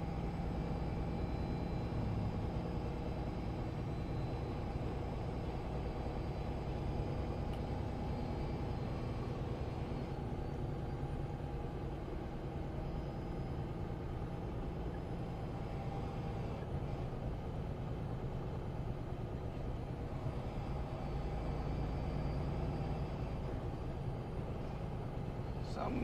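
Semi truck cruising at highway speed, heard inside the cab: a steady diesel engine drone with road and tyre noise.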